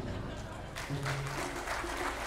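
Audience applause breaking out about a second in, over the fading ring of a live orchestra's final chord, with a few quiet low held notes underneath.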